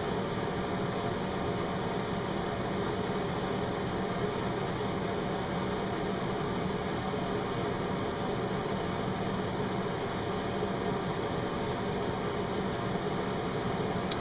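Steady background hum and hiss, like a running fan, holding even throughout with no distinct events.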